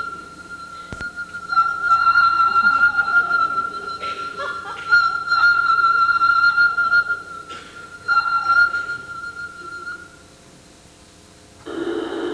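A recorded violin tone played through a small speaker held in the mouth, the mouth shaping it like a voice: one long high note at a steady pitch whose tone keeps changing, like shifting vowels, breaking off about ten seconds in. Audience noise breaks out just before the end.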